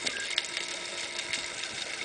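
Underwater sound through a camera housing: faint, irregular clicking and crackling over a steady hiss, with a faint low hum.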